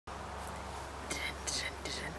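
Soft whispered voice sounds: three short breathy bursts starting about a second in, over a steady low hum.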